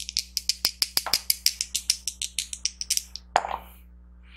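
A d12 and a d6 rattling: a quick, even run of sharp clicks, about eight a second, that thins out and stops about three seconds in.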